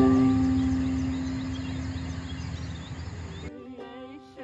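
A ukulele's last strum ringing out and slowly fading, over open-air background noise with faint high chirping. About three and a half seconds in it cuts abruptly to a clean ukulele tune.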